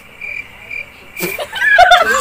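Cricket-chirp sound effect, the comic cue for an awkward silence: short high chirps about four a second, stopping just over a second in as laughter breaks out.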